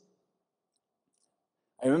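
Near silence in a pause of a man's speech, then his voice starts again near the end.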